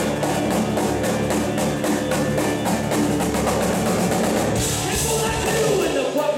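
Live blues-rock band playing an instrumental passage at full volume: drum kit keeping a steady beat under bass and electric guitar, with the cymbals growing brighter near the end.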